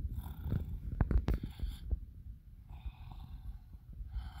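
A person making snoring sounds, about three breathy swells a second or so apart, over the rumble and a few bumps of a handheld phone being moved.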